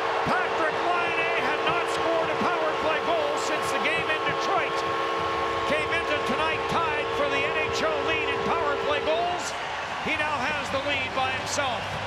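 Arena goal horn blowing a steady held chord over a loudly cheering crowd, signalling a home-team goal. The horn cuts off about nine seconds in and the crowd's cheering carries on.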